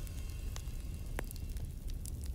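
Fire crackling: a soft steady hiss with a few sharp pops.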